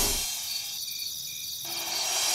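Crickets chirping steadily in a high, fast trill as the preceding music fades out; a low held musical note comes in near the end.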